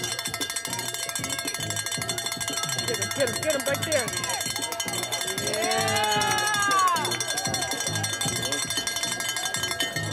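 A bell rung rapidly and without pause, its metallic ringing steady throughout, with voices shouting about six seconds in.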